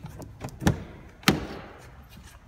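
Chevrolet Volt driver's door handle pulled and the latch releasing as the door opens: a few small clicks, then two sharp clunks about half a second apart, the second ringing briefly.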